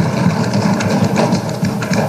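Many legislators thumping their desks together in the assembly chamber: a dense, irregular patter of low thuds, the usual sign of approval for the speech.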